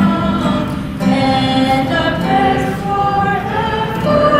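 Choral music: a choir singing held notes that change pitch every second or so.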